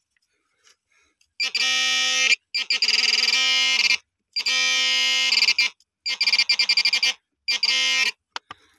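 Handheld pinpointer metal detector buzzing in five loud bursts, starting about a second and a half in. Some bursts are a steady tone and others break into fast pulsing beeps as its probe is worked into the soil: it is signalling metal buried in the soil.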